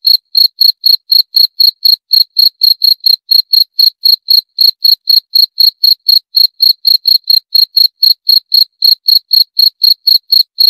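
Cricket chirping steadily: short, high-pitched chirps, evenly spaced at about four a second.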